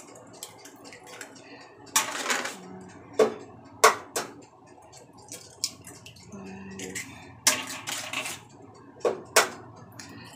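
Raw eggs being cracked open over a glass mixing bowl: a series of sharp taps and cracks of eggshell spread through, with brief scraping and rustling as the shells are pulled apart and dropped.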